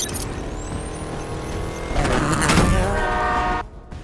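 Film action soundtrack: vehicle engine noise under steady sustained tones, with a louder rush about two to three seconds in. It all cuts off abruptly just before the dialogue.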